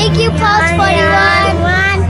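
Music: a song sung by high, child-like voices over a steady held bass note.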